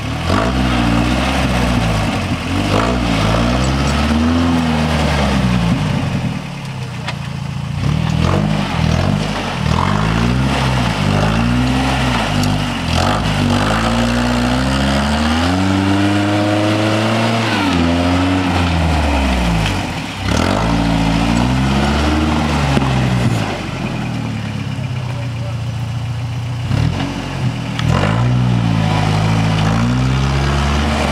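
Toyota 4Runner rock crawler's engine revving up and down over and over as the truck works its way over rocks, its pitch rising and falling every second or two.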